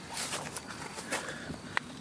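Hands rustling through loose soil and dry fibrous roots while pulling sweet potatoes out, in a few short scratchy bursts, with one sharp click near the end.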